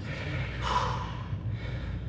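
A man's sharp, breathy gasp or exhale, loudest about three-quarters of a second in, from a bodybuilder straining to hold a flexed pose, over a steady low hum.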